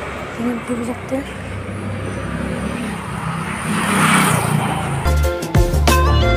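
Street noise with traffic, including a vehicle swelling past about four seconds in, and a few brief voice sounds in the first second. Background music with steady sustained notes starts about five seconds in.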